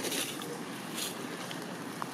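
Dry fallen leaves rustling and crunching under a walking macaque, a few brief rustles over a steady outdoor noise.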